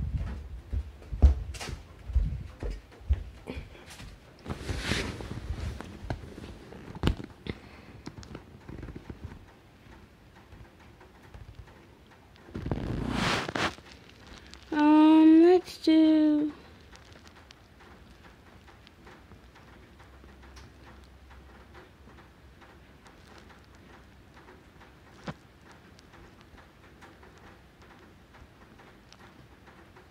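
Handling noise: knocks, bumps and rubbing as a phone camera is carried and moved about, then a rushing scrape as it is set down on a leather seat. About fifteen seconds in, two short loud pitched sounds, each about a second, come one after the other, followed by quiet room tone with a single click.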